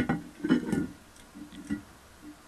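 A cast-iron car brake disc knocking once as it is turned over and set down on a table, followed by a few faint ticks as it is shifted by hand.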